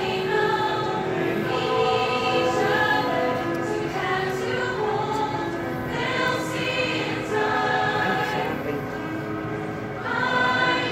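Mixed-voice high school show choir singing, with notes held for a second or two at a time.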